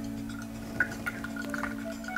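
Soft background music holding a steady low chord, with a few faint small drips and clinks of water and ice in a glass as a die-cast toy car is dipped into ice-cold water.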